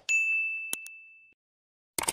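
A single high chime-like ding from a subscribe-button animation sound effect, fading away over about a second, with two quick clicks partway through and another click at the end.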